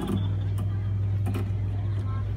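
A steady low hum, with two faint knocks about half a second and a second and a quarter in.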